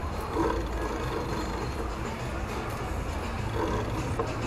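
Busy street ambience picked up by a moving action camera: a steady low rumble of traffic and wind on the microphone, with faint music under it. Brief louder patches come about half a second in and again near the end.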